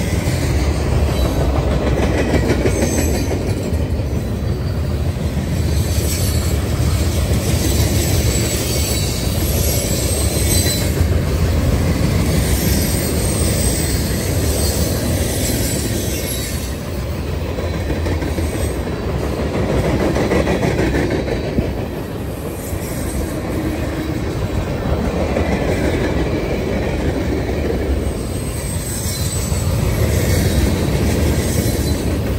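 Cars of a mixed freight train rolling past at close range: a steady rumble of steel wheels on the rails. Faint high wheel squeals come and go.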